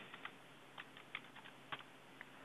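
Computer keyboard keystrokes, faint: about a dozen short, light clicks in quick irregular runs as a number is typed into a field.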